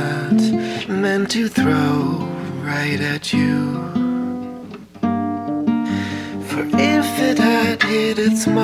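Song: a soft male voice singing over acoustic guitar, with a brief lull about five seconds in.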